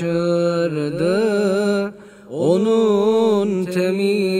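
A man's voice singing a Turkish ilahi (Islamic hymn) unaccompanied, holding long, wavering ornamented notes. It breaks for a breath about two seconds in, then slides up into the next note.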